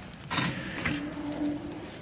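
A brief metallic clatter of a wire grid display rack being handled on a table, followed by a faint steady hum in the hall.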